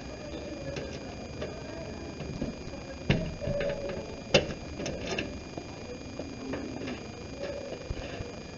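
Scattered light clicks and knocks, with two sharper knocks about three and four and a half seconds in, the second the loudest, over a faint high steady whine.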